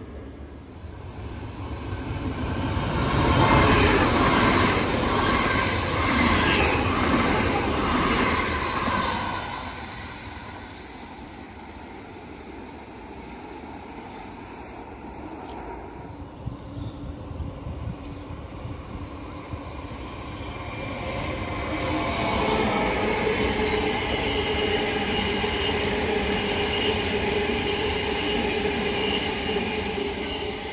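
Queensland Rail electric suburban trains. One runs by with a loud rumble of wheels on rail that swells over the first few seconds and fades by about ten seconds in. From about twenty seconds in a second train draws near, a steady whine and squeal sounding over its rumble.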